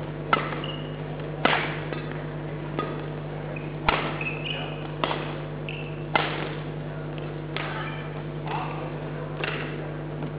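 Badminton rally: racket strings striking the shuttlecock nine times, about once a second, as the two players trade shots. Brief squeaks of court shoes on the floor come between some of the hits, over a steady low hum.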